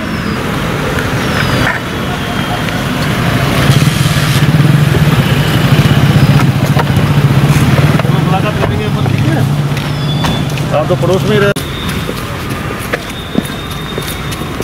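A police SUV's engine running close by, getting louder about three and a half seconds in and holding steady as the vehicle pulls up. The sound cuts off abruptly about eleven and a half seconds in.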